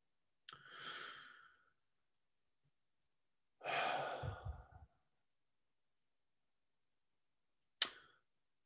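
A man's breathing in a pause between sentences: a faint breath about half a second in, then a louder, longer breath around four seconds, and a short click near the end.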